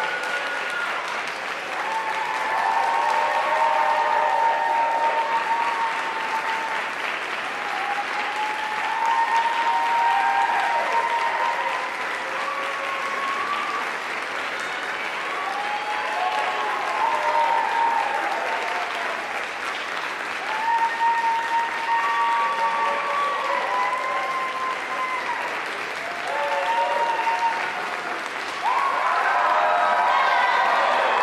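Audience applauding steadily in a recital hall, with voices calling out and cheering over the clapping.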